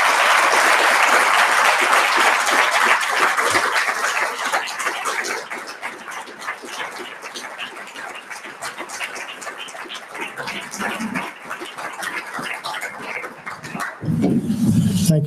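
Audience applauding, loud for the first four seconds or so, then dying down to scattered claps.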